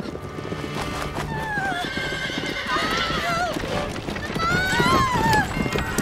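Hoofbeats of carriage horses coming on fast and getting louder, with repeated shrill horse whinnies from about a second in.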